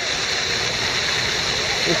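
Fountain jets splashing onto the pavement, a steady even rush of water.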